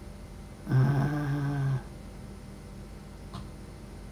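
A woman's voice giving one long, steady hummed 'mmm', closed-mouth and even in pitch, for about a second, starting about a second in. A faint click follows past the three-second mark.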